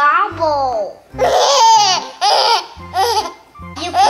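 Baby laughing in a series of short high-pitched giggles and squeals, over background music with a steady low beat.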